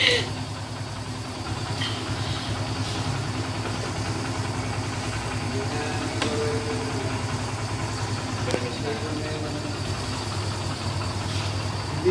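Kawasaki Barako motorcycle's single-cylinder four-stroke engine idling steadily, with an even, fast pulse.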